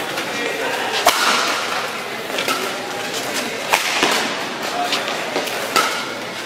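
Badminton rackets striking a shuttlecock in a fast doubles rally: a series of sharp cracks, the loudest about a second in, over the din of a busy sports hall with voices.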